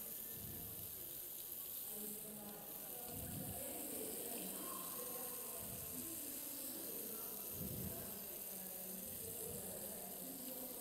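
Razor clams sizzling in hot olive oil in a frying pan as they cook open, a steady, quiet hiss.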